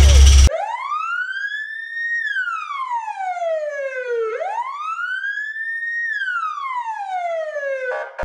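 A siren wail sound effect: a single clean tone that rises slowly, holds briefly at the top, then falls, twice in a row. It cuts in suddenly about half a second in, replacing the low noise of the just-started car engine.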